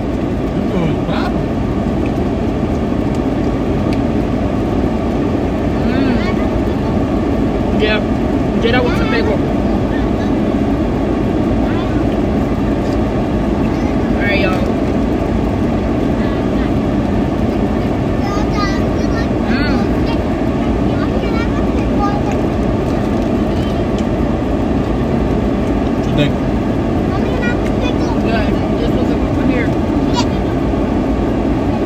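Steady running noise of a car idling, heard from inside the cabin, with short, quiet bits of voices now and then.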